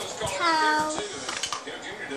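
A toddler's high-pitched wordless vocal sound lasting a little under a second, falling at its start and then held. A few short soft knocks follow about a second and a half in.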